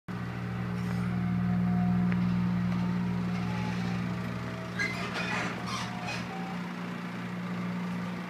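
Steady low mechanical hum, with a few brief scraping or rustling noises about five to six seconds in.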